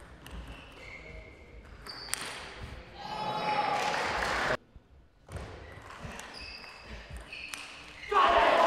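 Table tennis ball clicks in a sports hall, with a swell of spectator noise in the middle that cuts off suddenly.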